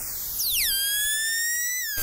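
Synthesized intro sound effect: a hissing sweep falling in pitch, then about half a second in a buzzy electronic tone that dives steeply and then glides slowly upward.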